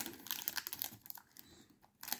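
Cardboard window box and its clear plastic film being handled: a quick run of small irregular clicks, taps and crinkles that thins out after about a second.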